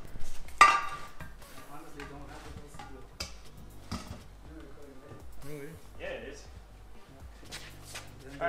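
A large racing tire and its metal wheel being handled and lifted: one sharp clunk about half a second in, then a few lighter knocks, with faint voices and music underneath.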